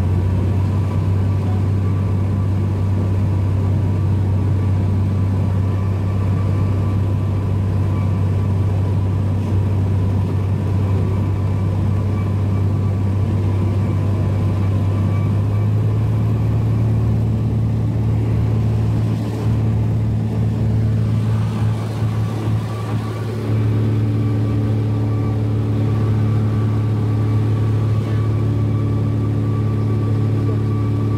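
Cessna 172's piston engine and propeller droning steadily in flight, heard inside the cabin. About halfway through, the engine note steps up slightly in pitch, and a few seconds later the sound dips and wavers briefly.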